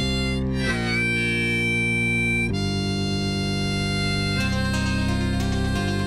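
Harmonica playing held notes over a backing of acoustic guitar and synthesizer, with one note gliding upward about half a second in.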